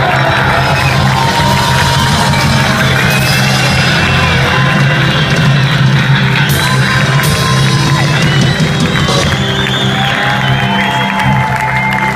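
Live band playing with electric guitars, bass, keyboard and drums, loud and steady, with the crowd cheering and whooping over the music.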